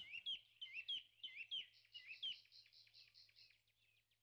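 Small bird chirping faintly: a quick run of short, rising chirps, about three or four a second, for the first two seconds, then softer rapid twittering that fades out.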